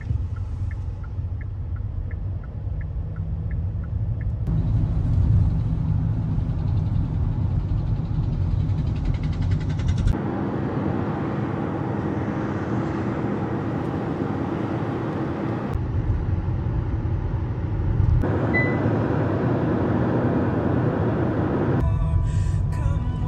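Engine and road noise inside a moving Kia car's cabin, in slow traffic, the rumble changing abruptly several times. A light regular ticking, about two or three a second, runs through the first few seconds.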